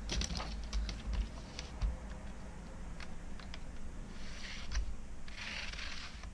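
Light clicks and taps of small metal parts being handled, then two short scraping sounds near the end as an LED backlight strip on its aluminium reflector is slid back into the edge channel of an LCD panel's metal frame.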